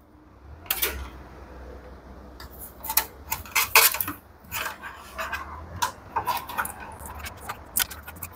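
Small clicks, taps and light metallic rattles of electrical wires and tools being handled, over a low steady hum.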